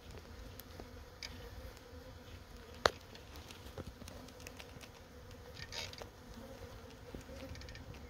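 A newly settled swarm of honeybees hanging in a cluster on a branch, buzzing in a steady hum. Scattered faint ticks run through it, with one sharp click about three seconds in.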